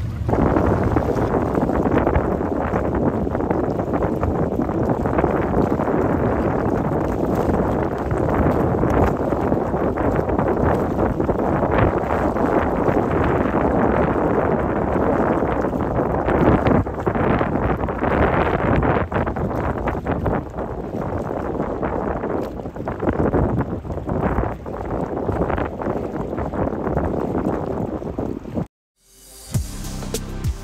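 Steady wind buffeting the microphone aboard a moving boat, with water and boat noise mixed in; it cuts off suddenly near the end.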